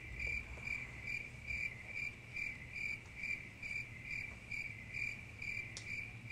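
Cricket chirping, a single steady high-pitched chirp repeated evenly a little over twice a second. It is used as the stock 'crickets' cue for dull, empty silence.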